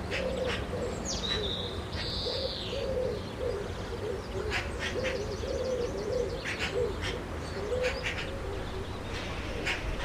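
Birds calling: a low cooing repeated in short phrases, with scattered high chirps and a brief high whistled call early on, over a steady low hiss.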